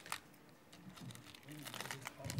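Faint crinkling of clear plastic bags and small clicks as bead-craft materials are handled on a table, a short crackle just after the start and a few more near the end.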